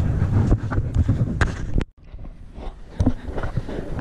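Wind rumbling on a handheld camera's microphone outdoors, cut off sharply about halfway through. A quieter outdoor background follows, with a single sharp knock near the end.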